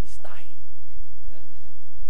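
A man speaking softly, almost in a whisper, into a lectern microphone: a short breathy utterance near the start and a few faint words about halfway through. A steady low hum runs underneath.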